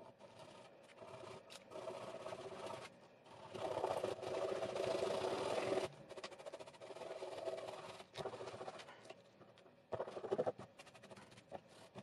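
The wooden end of a paintbrush handle scraping and rubbing over black gloss paint on a plastic Nerf blaster magazine, breaking and chipping the paint. The scratching comes in uneven strokes, loudest from about three and a half to six seconds in, with a short sharp burst near ten seconds.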